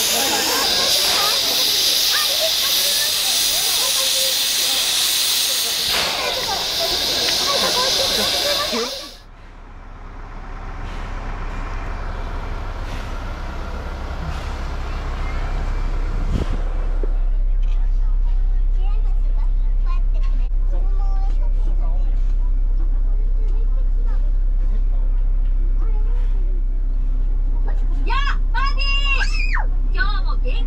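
Steam locomotive standing at the platform, venting steam with a loud, steady hiss. The hiss cuts off abruptly about nine seconds in, and a bus engine idles with a low rumble that grows louder near the middle.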